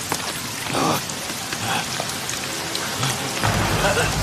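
Heavy rain pouring down in a steady hiss, with a few sharp knocks over it; a low rumble comes in near the end.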